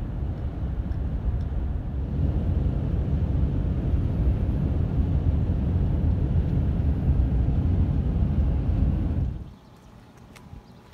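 Steady low road and engine rumble inside a vehicle cabin driving at highway speed, which cuts off suddenly near the end.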